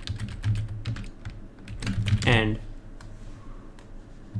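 Typing on a computer keyboard: a quick run of keystrokes through about the first two seconds, then a few scattered strokes.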